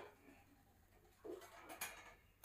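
Near silence: kitchen room tone, with a faint low coo-like sound a little past the middle and a single light click near the end.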